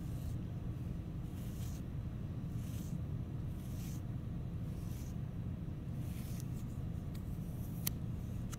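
Metal rib scraped across a soft clay slab in repeated strokes, about one a second, smoothing the surface. A few sharp clicks come near the end, over a steady low hum.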